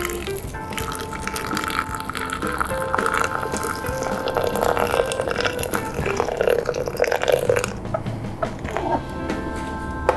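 Water poured in a thin steady stream from a gooseneck kettle into a glass French press, filling it, with background music.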